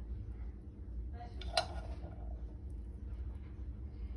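Quiet handling of cooked ground turkey crumbled by hand onto spaghetti squash in a glass baking dish, with one sharp clink against the glass dish about a second and a half in, over a steady low hum.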